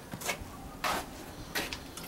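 Camera handling noise: a few light clicks and knocks as the camera is moved and repositioned, the loudest just before one second in.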